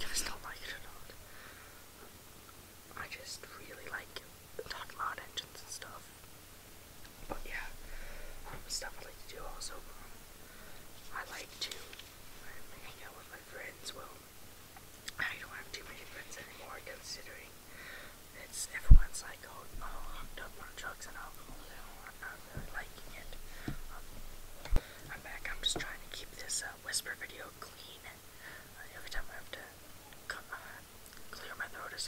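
A person whispering, rambling on continuously in soft breathy speech. Two sharp low thumps cut through: a loud one about two-thirds of the way in and a smaller one shortly after.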